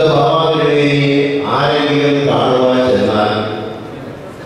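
A man's voice chanting through a handheld microphone in long held notes: three sung phrases, each held about a second on a steady pitch, the last fading away near the end.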